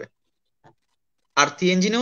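Speech in Bengali over a video call, breaking off into about a second of dead silence with one faint, brief sound in the middle of it, then resuming.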